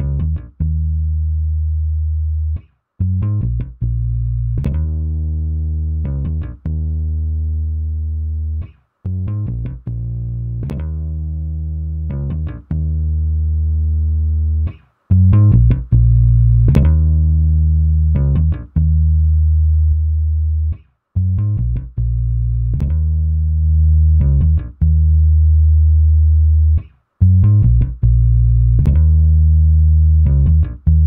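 Bass guitar loop playing a repeating phrase, first dry with the compressor bypassed. About halfway through it is run through the SSL LMC+ listen mic compressor plugin and sounds louder and denser.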